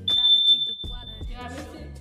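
A high, steady electronic beep lasting about a second and a half, over background music with a deep bass beat.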